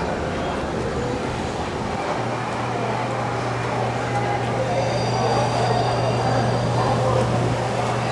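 Indistinct background chatter of many voices, with a steady low hum that comes in about two seconds in.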